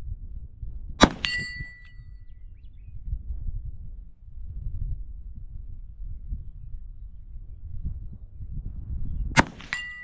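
Two .357 Magnum revolver shots, one about a second in and one near the end, each followed about a quarter second later by the clear ring of a steel target being hit.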